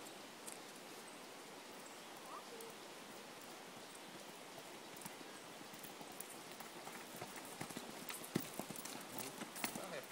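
Hoofbeats of a young Tennessee Walking Horse at a racking gait, with chains on its front feet. The hoofbeats are faint at first and grow louder and sharper over the last few seconds as it comes closer over dirt.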